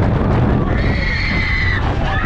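A rider's high-pitched scream, held for about a second in the second half, over heavy wind rumble on the microphone as the fairground swing ride moves through the air.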